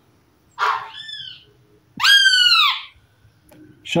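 Fledgling great kiskadee calling twice. The first is a harsh call about half a second in that trails off into a falling note. The second, about two seconds in, is a louder arched call that rises and then falls in pitch: the calls of a young bird out of the nest, calling for its parent.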